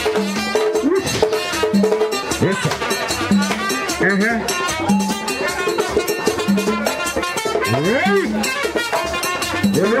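Rhythmic Haitian Vodou ceremonial music: steady drumming and percussion with voices singing over it, a low drum note recurring about once a second.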